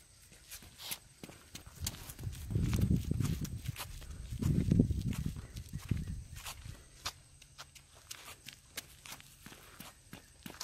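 Running footsteps slapping on a paved path, a quick uneven patter of steps. A low rumble swells twice, around three and five seconds in.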